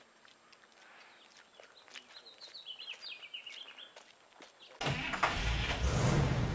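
Faint outdoor ambience with a short run of bird chirps, then about five seconds in a loud, low rumbling sound cuts in suddenly.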